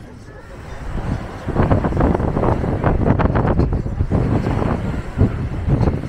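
Wind buffeting the microphone, rising sharply about a second and a half in and going on in gusts, with people talking nearby.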